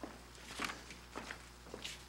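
Footsteps of several people walking across a stage floor: irregular shoe clicks and scuffs, the loudest about two-thirds of a second in and again near the end.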